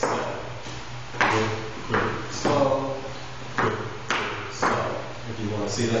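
Hard-soled dress shoes stepping on a wooden floor in the salsa basic rhythm: sharp taps in groups of three with a pause between, marking the 1-2-3, 5-6-7 count. A man's voice counts the beats between the steps.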